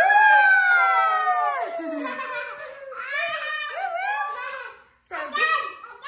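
Young girls screaming and giggling with excitement: one long high scream that slides down in pitch over the first second and a half, then shorter squeals and laughter, with a brief break near the end.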